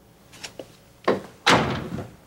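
A wooden door being pulled shut: a few light knocks, then a sharp knock about a second in and a loud thud about one and a half seconds in as it closes.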